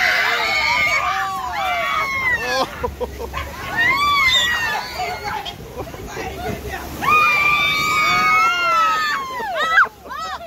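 Riders on a river rapids raft shrieking and laughing over churning, sloshing whitewater, with a long held scream about seven seconds in.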